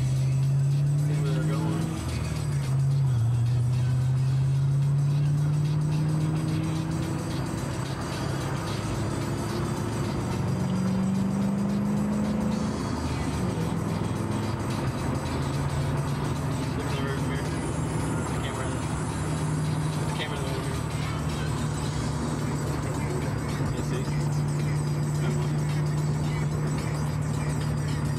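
Ford Mustang Cobra's V8 engine heard from inside the cabin, its pitch rising a few seconds in and again around ten seconds as it accelerates, falling back, then holding steady at cruise.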